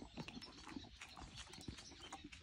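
A horse chewing feed close up, with faint, irregular crunching clicks.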